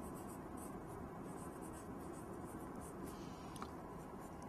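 Faint scratching of a pen writing, in short irregular strokes, over a low steady room background.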